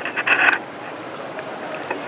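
Crackling clicks and rustling on a hand-held microphone, loudest about half a second in, then a steady hiss.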